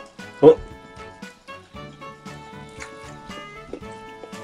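Light background music with steady held notes, and one short, loud cry about half a second in.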